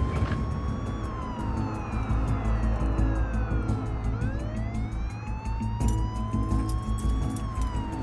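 Ambulance siren wailing, heard from inside the moving ambulance: a slow rise, a long fall to about four seconds in, then another slow rise and fall. Under it run a low rumble of the vehicle and background music.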